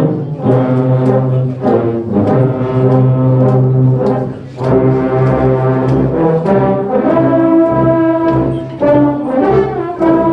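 A massed ensemble of tubas and euphoniums playing a Christmas carol in full, sustained chords, with a short breath pause between phrases about halfway through.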